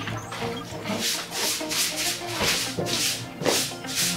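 Straw hand broom swishing in quick, regular strokes, about two a second, over background music.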